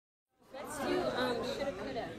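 Several voices chatting and overlapping, starting suddenly about half a second in after silence.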